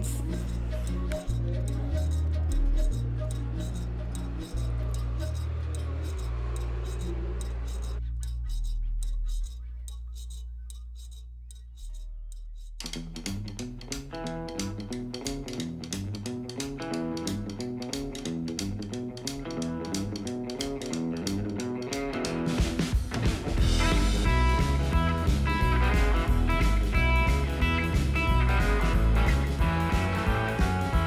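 Background music: slow, held low notes that fade away about ten seconds in, then a plucked-guitar track starts and grows fuller with a steady beat about two-thirds of the way through.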